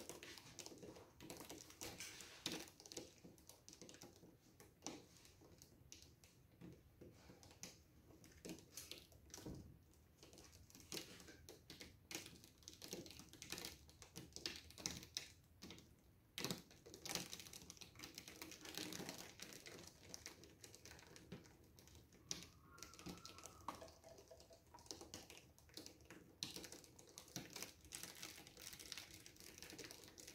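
Faint, scattered, irregular ticks and crinkling from handling the clamped wooden panels as they are tilted, with paint dripping off their edges.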